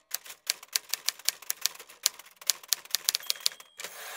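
Typewriter sound effect: a quick, uneven run of key clacks, with a short bell-like ring near the end followed by a denser rattling stretch.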